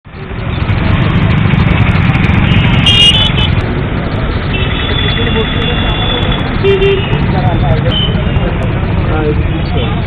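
Road traffic running steadily, with vehicle horns sounding about three seconds in and again for a couple of seconds around the middle, over people talking.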